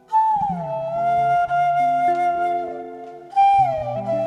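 Long wooden end-blown flute playing a slow, breathy melody: a note that slides down and is held, then a second downward slide about three and a half seconds in. Lower sustained chord notes accompany it.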